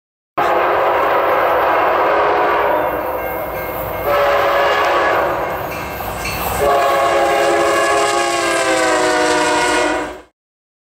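A locomotive air horn sounds a held chord, starting about half a second in. It goes as three long blasts, the second beginning about four seconds in and the third a little before seven seconds. Its pitch sags slightly near the end.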